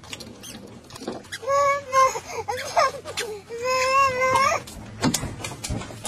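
A small child's high-pitched voice in two long, wavering cries, about a second and a half in and again about four seconds in, with scattered clicks and knocks around them.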